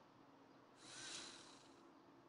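Near silence: faint room tone with a low steady hum, and one soft exhale about a second in.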